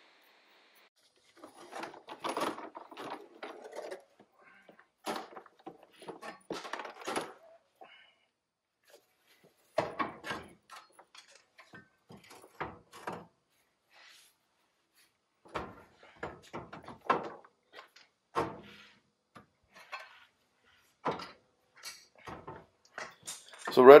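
Intermittent clunks, scrapes and rattles of metal parts and tools being handled under a pickup truck as a heavy front differential housing is worked up into place, with short quiet gaps between the knocks.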